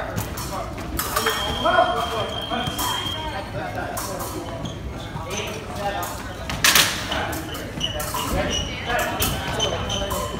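A fencing bout on a strip: quick footwork and sharp clicks of blade and foot contact, the loudest single clash or stamp about two-thirds of the way through. A thin steady high tone sounds for about two seconds starting a second in, and voices carry in the hall.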